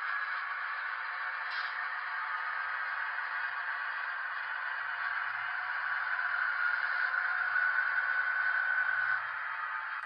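Sound-equipped HO scale EMD SW1500 switcher playing its diesel engine sound through its small onboard speaker as it pulls a boxcar. The sound is thin with no bass. A steady whine swells over a few seconds and cuts off suddenly about nine seconds in.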